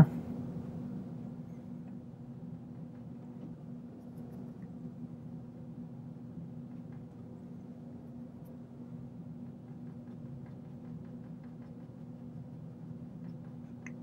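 Faint, soft scratching and dabbing of a paintbrush working oil paint, mixing it on a handheld palette and stroking it onto the canvas, over a steady low hum.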